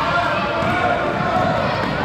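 Basketball dribbled on a hardwood gym floor, amid the chatter of players and spectators.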